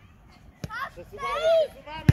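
Children shouting on a football pitch, one high call rising and falling about a second and a half in, with a single sharp knock shortly before.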